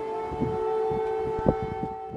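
Air-raid siren sounding, holding one steady pitch, with several dull thuds, the loudest about one and a half seconds in.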